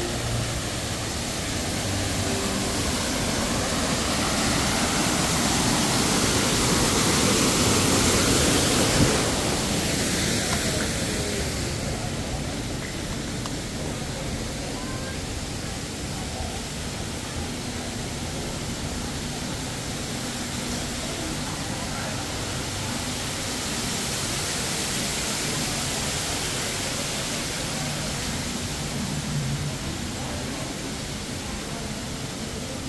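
Steady rush of falling water from an artificial rockwork waterfall. It grows louder over the first nine seconds or so, drops away fairly suddenly at about eleven seconds, and swells a little again near the end.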